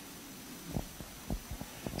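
A few soft, low thumps in the second half, handling noise from a handheld microphone, over quiet room tone.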